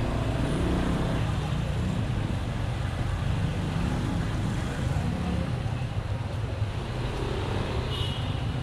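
Honda ADV 150 scooter's single-cylinder engine running under way, with road and wind noise and surrounding traffic. The engine note swells about a second in and again around the middle.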